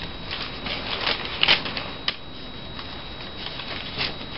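Paper rustling and crackling as a folded restaurant receipt is handled and opened out, in irregular crinkles with a couple of sharper crackles about a second and a half and two seconds in.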